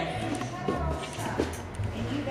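Running footsteps on a padded trampoline-park floor: a few short thuds about half a second apart.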